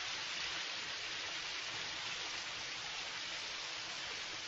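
Shower spray running steadily, an even hiss of falling water.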